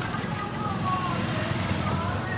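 Street traffic heard from a moving scooter: a steady low rumble of engine and road noise, with passing motorbikes and people's voices in the street around.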